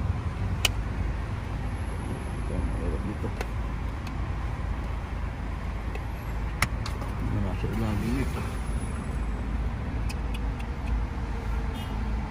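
Sharp plastic clicks and snaps from a car side-mirror housing as its cover is pried off its clips. A few single clicks come seconds apart, the loudest about six and a half seconds in, with a cluster of small ones near the end, over a steady low background rumble.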